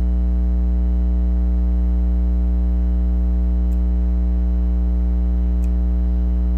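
Loud steady low electrical hum with a stack of overtones, unchanging throughout. Two faint ticks come about two seconds apart in the second half.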